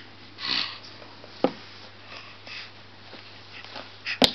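A short, breathy sniff about half a second in, then a single sharp tap about a second and a half in, with faint small knocks and rustles after, in a small room.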